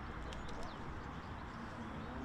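Outdoor ambience of faint birds chirping in the trees over a steady low rumble, with a few sharp clicks about half a second in.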